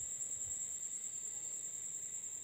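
Steady high-pitched whine over faint hiss, the constant background noise of the recording, with no other event.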